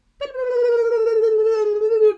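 A woman's voice holding one long, loud vocal note that drifts slightly down in pitch, a mock imitation of two teenagers' nonstop back-and-forth chatter.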